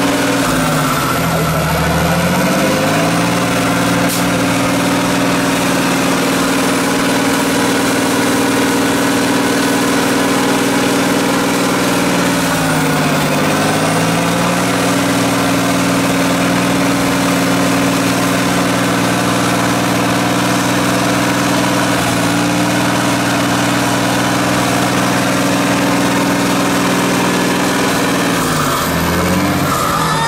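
A 6x6 trial truck's diesel engine running steadily at high revs, its pitch dipping sharply and climbing back three times: about a second in, around thirteen seconds, and near the end.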